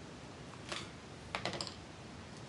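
Small mulberry-paper craft flowers being handled: a brief crinkly rustle about two-thirds of a second in, then a quick cluster of light clicks and crackles around a second and a half.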